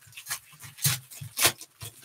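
Foil baseball card pack wrappers crinkling and tearing as packs are ripped open by hand. There are irregular sharp crackles, the loudest just under a second in and again half a second later.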